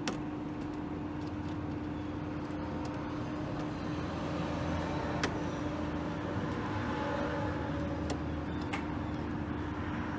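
Steady mechanical hum with a constant tone, and a couple of faint clicks as sensor wires are worked loose from a VFD's terminal block.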